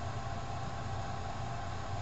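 Steady background hiss with a faint low hum underneath, unchanging throughout: the recording's noise floor.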